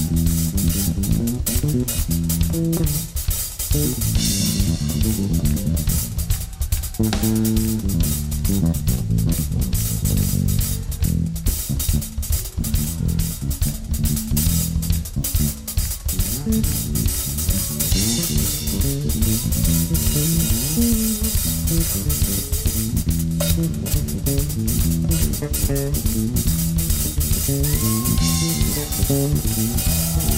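Live band playing an instrumental passage: an electric bass guitar plays a busy, moving line over a drum kit with cymbals. A short sliding higher note comes in near the end.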